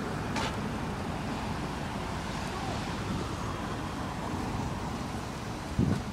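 Car traffic passing through a street intersection: steady engine and tyre noise. A short loud thump near the end.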